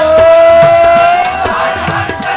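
Sikh shabad kirtan: voices singing with harmonium and tabla. A note slides up and is held for over a second, with percussion strokes keeping a steady beat about four times a second.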